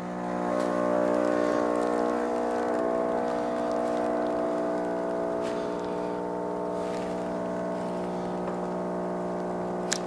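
KitchenAid KF8 super-automatic espresso machine's pump running while espresso pours from its twin spouts into two cups: a steady, even hum that swells slightly about a second in.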